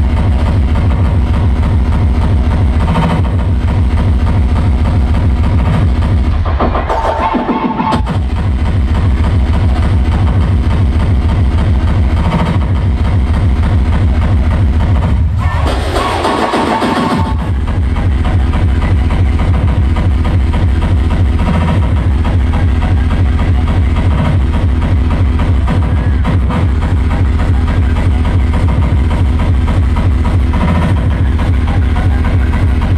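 A frenchcore DJ set played loud through a large hall's sound system, heard from the crowd: a fast, steady kick drum under synth lines. The kick drops out twice for a second or two, about a quarter of the way in and again about halfway, each time with a falling low sweep before it comes back in.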